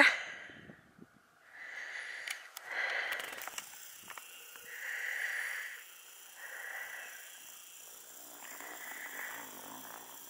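A person's audible breathing in about five slow breaths, each one swelling and fading, from a hiker partway up a climb.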